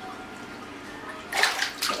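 Water moving and splashing in a fish-spa foot tank, with a louder burst of splashing about one and a half seconds in.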